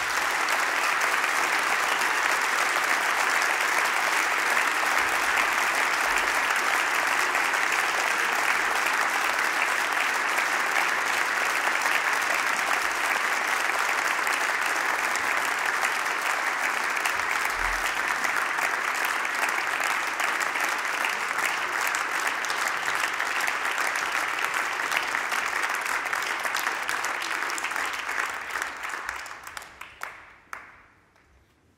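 Concert audience applauding steadily, the clapping dying away near the end.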